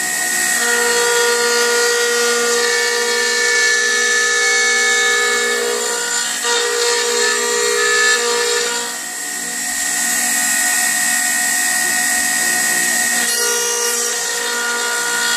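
Electric router on a pantograph running and cutting into a square lumber blank: a steady motor whine with the noise of the bit chewing wood, its tone shifting as the cutting load changes and easing briefly about nine seconds in.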